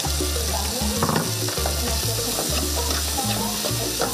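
Chicken gizzards, onions, tomatoes and fries sizzling in a hot wok as a metal skimmer stirs and tosses them: a steady frying hiss throughout.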